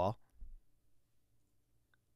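A man's voice finishing a spoken word, followed by a soft low thump about half a second in and then near silence with a few faint clicks.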